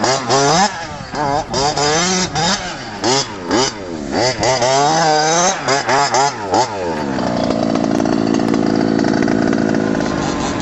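HPI Baja 5T 1/5-scale RC truck's two-stroke gas engine revving up and down in quick throttle bursts, then held at a steady high pitch for the last three seconds.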